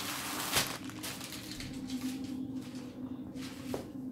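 Thin plastic film crinkling as it is peeled off a stack of baklava phyllo sheets, with one sharp crackle about half a second in, then softer rustling as hands smooth the dough sheets flat.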